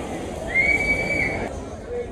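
A high, steady whistle held for about a second, over the murmur of people outdoors.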